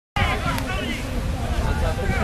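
Several voices calling out over a steady low rumble, with a short click about half a second in.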